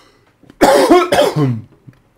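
A man coughs twice in quick succession, starting about half a second in.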